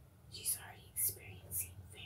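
Close, soft whispered reading with three sharp hissing sibilants about half a second apart.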